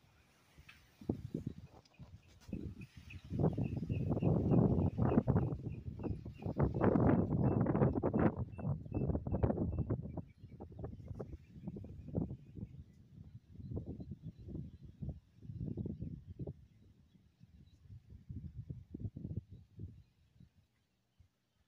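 Wind buffeting the microphone in irregular gusts, heaviest in the first half and then easing. A faint high chirp repeats about four times a second underneath during the first half.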